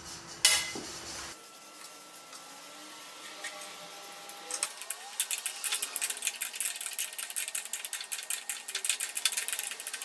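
A single sharp metal clink about half a second in. From about halfway through, rapid irregular metallic clicking and rattling as a homemade eye-bolt crank handle with a socket is spun to run a nut down a bolt.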